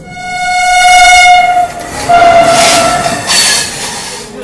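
Indian Railways train horn giving two long blasts, the second starting about two seconds in, with the rushing noise of a moving train under the second half.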